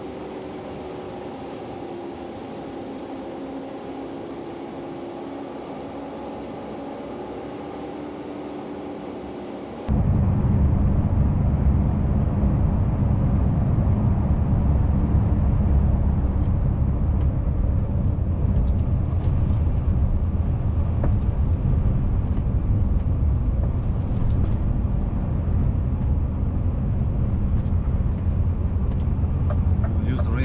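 Cab driving noise from a Scania S650 V8 truck on the move, a steady engine and road hum. About ten seconds in, it jumps abruptly to a much louder low rumble.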